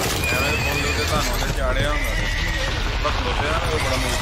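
Horses whinnying several times over galloping hooves on a film soundtrack.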